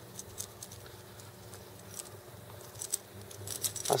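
Faint, scattered small clicks and light rattles of fishing tackle being handled on a spinning rod, growing busier in the last second.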